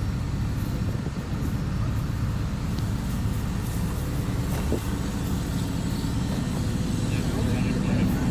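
Fire engine running steadily beside the camera, a low even rumble.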